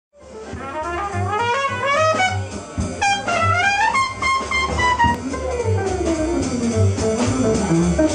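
Live small-group jazz: a trumpet plays a melody line that climbs in steps and then winds slowly downward, over an archtop electric guitar playing chords and low notes underneath.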